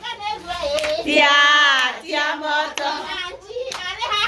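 Women singing a high-pitched celebration song, with hand claps; one voice holds a long note about a second in.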